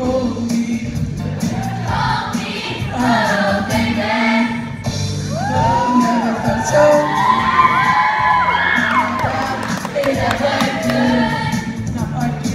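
Mixed-voice show choir singing an upbeat number over instrumental accompaniment with a steady bass line, the voices sliding up and down in arching glides through the middle of the passage.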